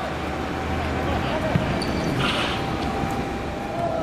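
A football being kicked and bouncing on a hard outdoor court, with a sharp thud about one and a half seconds in. Players' voices call out over a steady background hum.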